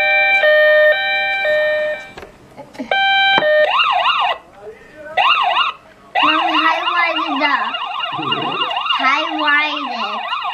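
Electronic sound effects from a battery-powered Hess toy ambulance. A pattern of stepped beeping tones plays first, then stops. A warbling siren follows, cutting in and out a couple of times as it is switched, and runs on steadily from about six seconds in.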